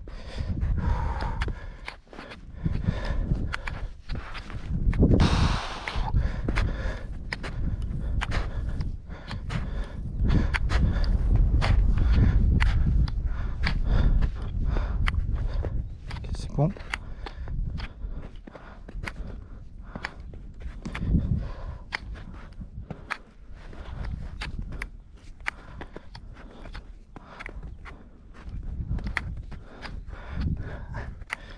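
Footsteps crunching and trekking pole tips striking on a slushy snowfield, in many short irregular strokes over a low rumble.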